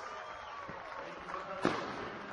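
Crowd murmur with scattered voices, then a single sharp firework bang near the end.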